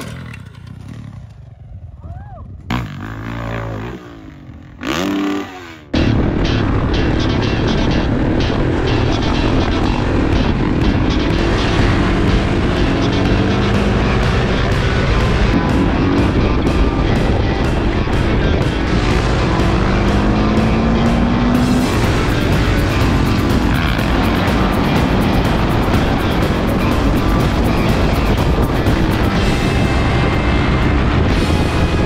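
A dirt bike engine revs in short bursts, its pitch rising and falling. About six seconds in, loud background music cuts in abruptly and runs on, with dirt bike engines under it.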